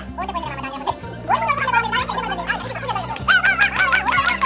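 Music playing: a song with a wavering singing voice over steady low notes that change in steps.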